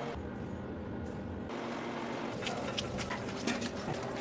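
Bakery work-room sound: a steady background hum, with light taps and clatter from about halfway through.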